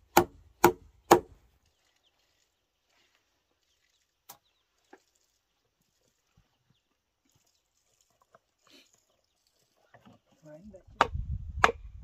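Wooden mallet striking a chisel to cut a mortise in a timber beam: three sharp blows about half a second apart at the start. Then a long quiet stretch with a faint knock or two, and the blows start again about a second before the end over a low rumble.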